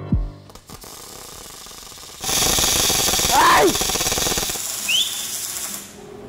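Electric welding arc: a loud, steady crackling hiss that starts about two seconds in and cuts off just before the end.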